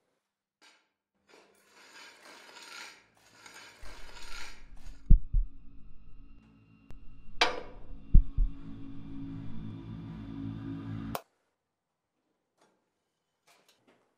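Horror-film sound design: some scratchy rustling, then a low drone swells in about four seconds in, struck by two deep booming hits with a sharp swish between them, and cuts off suddenly about eleven seconds in.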